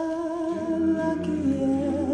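Male a cappella ensemble holding a wordless chord between sung phrases, the pitches steady with a slight waver. A low bass note comes in about half a second in, and the chord shifts near the end.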